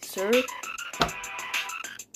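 A pitch-altered voice calls out once, rising in pitch, over a faint quick ticking beat. A sharp click comes about a second in.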